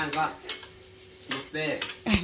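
Cutlery clinking against plates during a meal: a few short, separate clinks.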